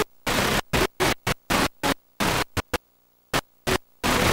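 Static hiss from a blank stretch of videotape, cutting in and out in irregular bursts with brief silences between them, including a quiet gap of about half a second past the middle.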